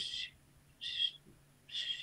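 A pause in a man's speech: the end of a word, then a short, faint, high hiss about halfway through, and another brief hiss just before he speaks again, typical of breath on the line.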